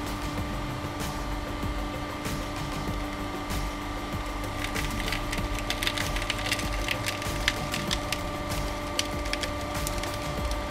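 Homemade 150-ton hydraulic press running with a steady hum as the ram comes down. About halfway through, a run of sharp crackles and snaps starts as the ram crushes the pineapple's tough crown leaves.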